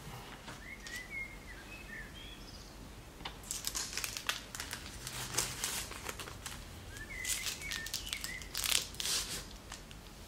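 Baking paper crinkling and rustling as a log of cookie dough is rolled in it by hand on a wooden board, starting about three seconds in. Short high chirps, like a small bird's, come twice: about a second in and again near eight seconds.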